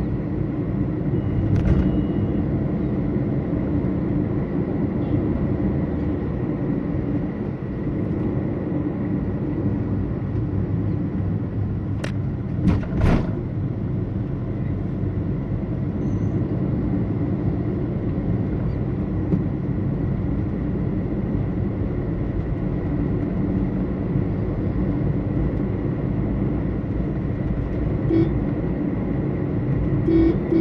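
Steady road and engine noise heard from inside a moving vehicle, with two sharp knocks in quick succession about halfway through.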